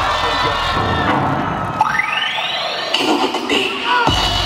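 Audience cheering and shouting over the dance music from the stage PA. About halfway through, the bass drops out and a sound rises steadily in pitch for about a second.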